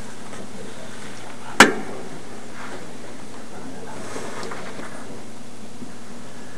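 Hissy, muffled playback of a covert body-wire recording: a steady noise bed with faint, indistinct voices a little past the middle, and one sharp click about a second and a half in.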